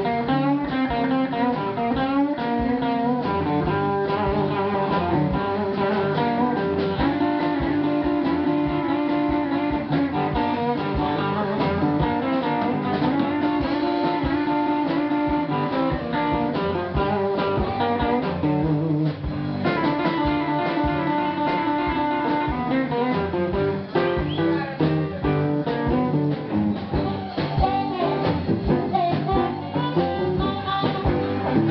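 Live blues band playing an instrumental passage, electric guitar carrying the melody over drums.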